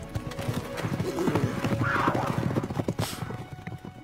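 Horses galloping away, a fast run of hoofbeats, with a whinny about halfway through, over film music.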